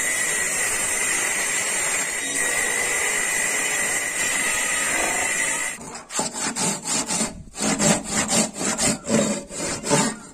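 Bench-mounted circular saw cutting through a thick wooden plank: a steady run with a thin whine, stopping abruptly about six seconds in. Then a handsaw cuts into a wooden block in quick back-and-forth strokes, about three a second.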